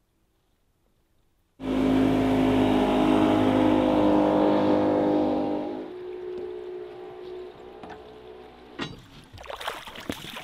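Near silence, then about a second and a half in a boat's outboard motor starts up abruptly and runs steadily, easing off to a lower, quieter running about halfway through. Near the end come a few sharp knocks and water splashes at the side of the boat.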